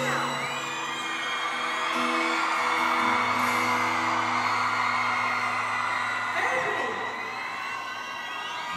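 Large arena crowd cheering and screaming, swelling to a peak midway, over slow live music with long-held low chords. Heard from far back in the audience, the stage sound is distant and the crowd is close.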